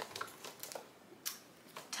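A few faint crinkles and light clicks from a shrink-wrapped bamboo plastic-bag organizer being handled, the sharpest click about a second in.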